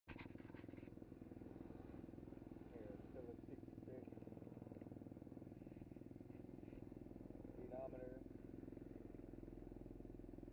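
2017 SSR SR125 pit bike's single-cylinder four-stroke 125cc engine idling steadily while the bike stands still, with a few brief words over it.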